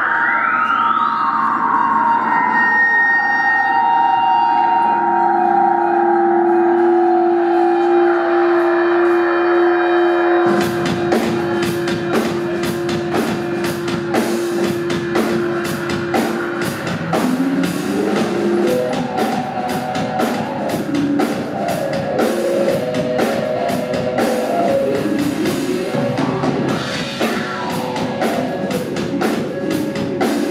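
Live rock band starting a song: an opening of sliding, siren-like tones and held notes, then drums and the full band come in about ten seconds in and play on loudly.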